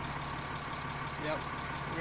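Pickup truck engine idling with a steady, low, even hum.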